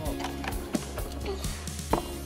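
Background music with steady held bass notes and a few light beats.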